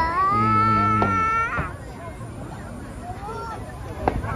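Spectators exclaiming at a fireworks burst: one drawn-out high-pitched cry of about a second and a half, with a lower voice under it. After it come quieter murmurs from the crowd.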